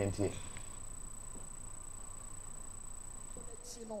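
Steady high-pitched whine over a low, even background hiss: studio room noise in a pause between words. A man's last word fades out just after the start, and new speech begins right at the end as the whine stops.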